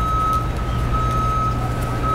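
A vehicle's reversing alarm beeping steadily, about one half-second beep a second, over a low engine rumble.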